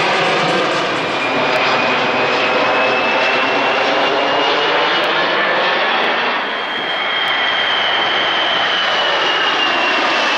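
A jet airliner passing low overhead: loud, steady engine noise with a high fan whine that drifts slowly in pitch.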